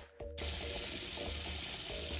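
Salon shampoo-bowl hand shower spraying water onto hair in the sink: a steady hiss of running water that cuts in suddenly under half a second in, after a moment of background music.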